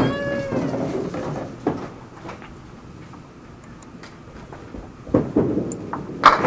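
A short high squeal falling in pitch, then a candlepin ball thuds onto the lane about two seconds in and rolls toward the pins with a low rumble, with a louder knock near the end.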